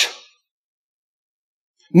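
A man's spoken word trails off at the start, then dead silence for about a second and a half, and his speech resumes right at the end.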